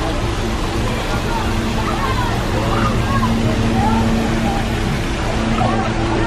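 Indistinct voices of people and children calling and chattering around a pool, over a steady low mechanical hum and a constant noisy wash.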